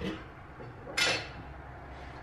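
A single short clack about a second in, from the juicer's plastic food pusher being set into its feed chute; the juicer is not yet running.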